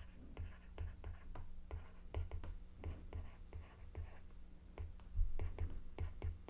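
Stylus tapping and sliding on a tablet's glass screen as words are handwritten: quiet, irregular ticks, a few each second.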